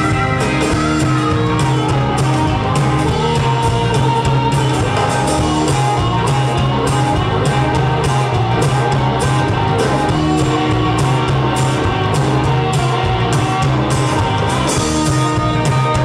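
Live blues-rock band playing, led by an amplified harmonica cupped against a handheld microphone, over bass and a steady drum beat.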